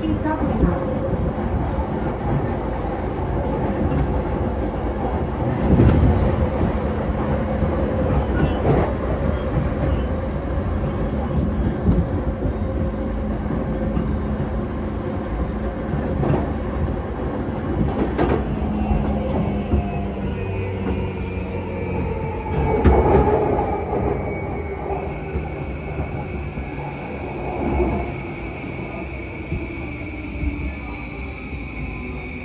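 Running noise of an E235-series Yamanote Line electric train heard from inside the carriage: a steady rumble of wheels on rail with a low motor hum. A few louder thumps rise out of it, and near the end a high whine falls slowly in pitch.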